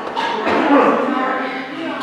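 Several people talking at once in a room, with one loud, drawn-out voice call rising above the chatter about half a second in.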